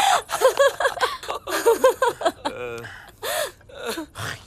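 A person's voice in a run of short, breathy gasping cries without clear words, with a brief creaky buzz about two and a half seconds in.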